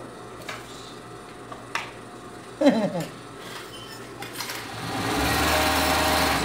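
Industrial overlock (serger) machine starting up about five seconds in and running steadily as it stitches closed a piece of white plush fur. Before it starts there are only quiet handling sounds and a few soft clicks.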